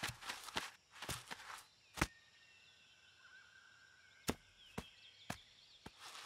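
Sharp knocks and taps: a quick cluster in the first second and a half, one louder knock about two seconds in, then a few single taps spaced about half a second apart near the end. Between them are faint high chirps.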